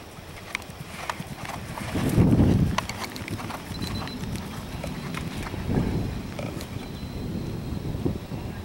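Horse cantering across grass, its hoofbeats coming in a steady stride rhythm about twice a second. There are two louder, deep rushes of sound, about two seconds in and near six seconds, the first being the loudest.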